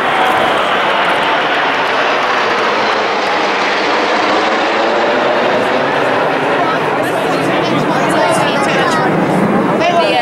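A formation of military jets passing overhead, their engines making a loud, steady rushing noise throughout. People's voices come in over it near the end.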